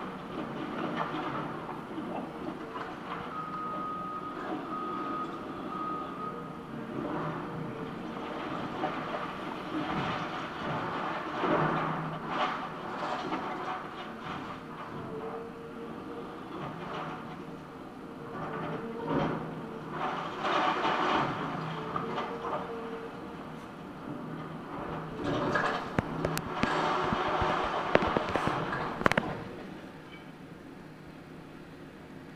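Caterpillar hydraulic excavator demolishing a building: engine and hydraulics running steadily while debris crunches and clatters in waves, with several sharp cracks near the end. Three short beeps of a reversing alarm sound about four seconds in.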